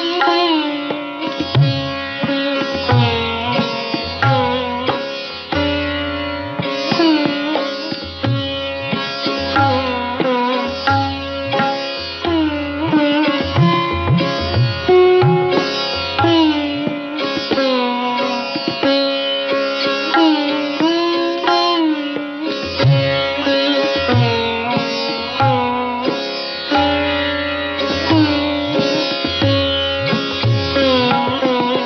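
Solo sitar playing a Masitkhani gat in slow (vilambit) teentaal in raag Ahir Bhairav: a steady stream of plucked notes, many of them bent up and down in pitch.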